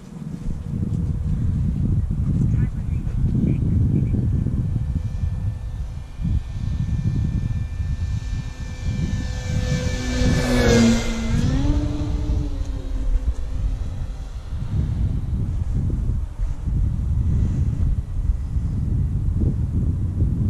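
Electric motor and propeller of an E-flite Carbon-Z Cub SS RC plane making a low fly-by about halfway through, its whine growing louder and then dropping in pitch as it passes. Heavy wind buffeting on the microphone underneath throughout.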